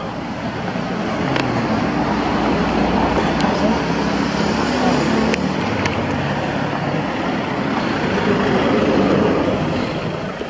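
A car driving up the road and passing close by, its engine and tyres making a steady rushing noise. The noise swells to its loudest near the end as the car goes past, then starts to fade.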